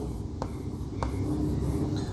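Chalk writing on a blackboard: a faint scratching of strokes, with two light taps of the chalk about half a second and a second in.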